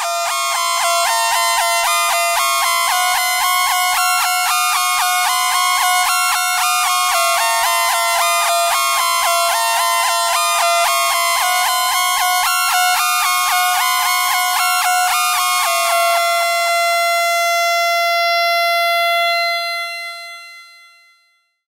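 Hand-played arpeggio on a modular synthesizer, bright high-pitched notes stepping quickly, passed through a Moon Modular 530 stereo digital delay that repeats them. Near the end the playing stops and a held note with its echoes fades away.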